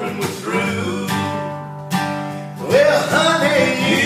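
Acoustic guitar strummed in a slow country song, chords ringing between strokes.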